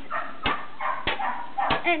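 A shovel chopping into frozen, icy ground in three sharp knocks about 0.6 s apart, breaking up ice. A dog gives short high cries between the blows.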